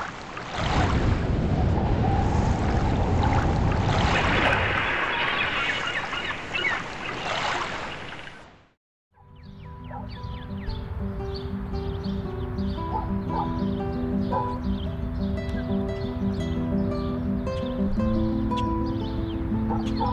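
Rushing water that fades out about eight and a half seconds in. After a brief silence, instrumental film music starts, with held low notes under quick high plucked figures.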